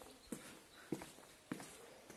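Footsteps of a person walking at an even pace, three steps about 0.6 s apart.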